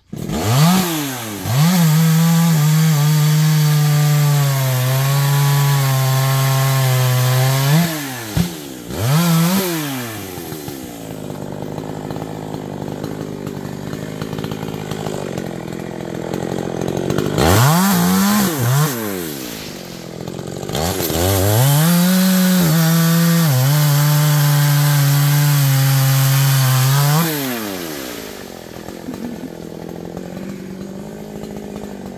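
Two-stroke gasoline chainsaw held at full throttle for about six seconds, its pitch sagging a little as it cuts into the mango wood. It then drops to idle with two short blips of the throttle. After a brief rev, it runs another long full-throttle cut of about six seconds and falls back to idle near the end.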